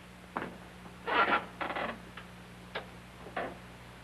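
Handling sounds at a radio set: a sharp click, a couple of short scuffs, then a few more light clicks, over a steady low hum.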